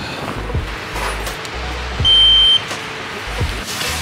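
Background music with a steady beat. About two seconds in, a single high electronic beep lasts about half a second and is the loudest sound.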